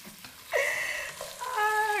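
A woman's voice giving two high, drawn-out exclamations, the second a held note that falls away at the end.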